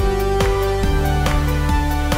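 Upbeat electronic background music with a steady beat of a little over two strikes a second under held chords, which change about a second in.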